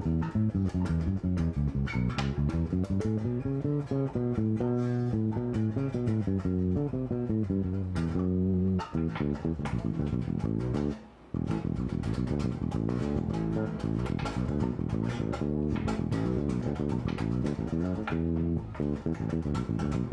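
Five-string electric bass guitar played solo: a continuous run of plucked single notes climbing and descending the neck, with a brief pause about eleven seconds in. It is an exercise linking as many B notes as possible, from the open low B string up through fretted Bs and octaves.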